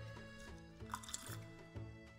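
Quiet background music: faint held chords over a soft, steady low beat.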